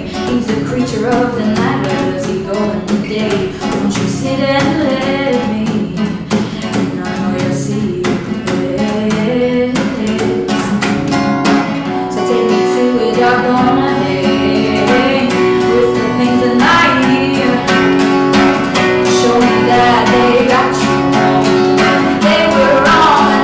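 A woman singing to her own strummed steel-string acoustic guitar, steady even strokes under the melody, holding longer notes in the second half.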